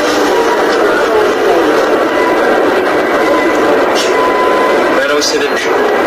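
Talking over a steady background noise.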